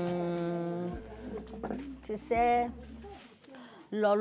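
A woman's voice: a long, steady hummed 'mmm' lasting about a second, then a short wavering voiced sound about two seconds in.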